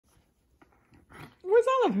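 A person calling the name "Oliver" in a drawn-out sing-song voice near the end, the pitch rising and then falling on the last syllable. Before the call there are only a few faint soft noises.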